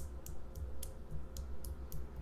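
Light, irregular clicks, about three or four a second, over a low steady hum.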